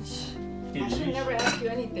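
Kitchen dishware clinking, a glass lid against a dish a couple of times, over steady background music.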